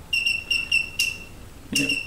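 Rapid short high-pitched electronic beeps from a piezo beeper on bench test equipment, about five a second, in two runs with a sharp click between them about a second in.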